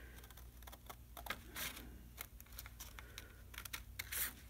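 Scissors cutting through a sheet of paper: a string of faint, irregular snips, about two or three a second.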